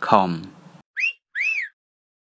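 Two short whistle-like chirps, about half a second apart, the second rising and then falling in pitch, after a voice that ends a little under a second in.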